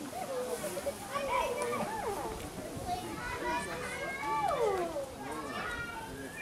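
Overlapping voices of children and other people talking and calling out, with no one voice clear.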